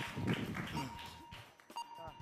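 Voices in a studio, fading out after shouted guesses, over a faint steady high tone that keeps breaking off.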